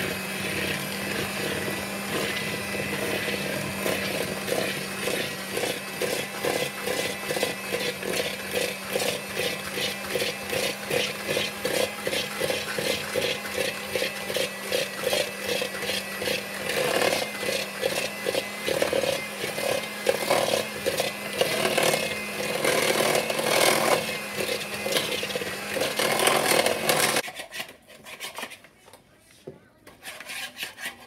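Hamilton Beach electric hand mixer running at a steady speed, its beaters churning thick cookie dough in a plastic bowl with a rapid rattle, until the motor cuts off near the end.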